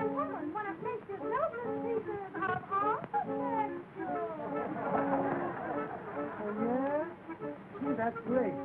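Dance music from an early sound film, its melody full of sliding, swooping notes, heard through a narrow, dull old soundtrack.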